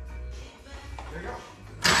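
Quiet background with music and faint voices, then just before the end a sudden loud start attempt on a freshly rebuilt Subaru EJ253 2.5-litre flat-four: the starter turns the engine over and it begins to run.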